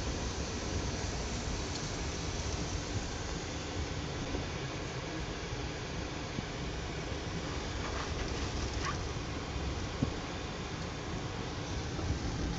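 Steady cabin noise of a BMW car driving slowly, a low rumble from engine and tyres heard from inside. A single short click about ten seconds in.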